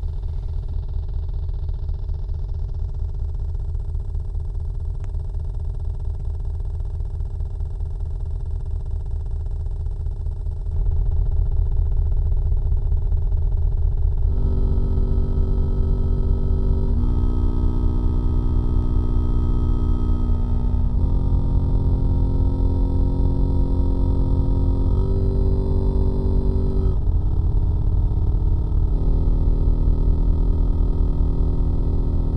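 Live electronic music from synthesizers: a fast, steady low bass pulse that gets louder about a third of the way in, then held synth chords come in about halfway and change every few seconds.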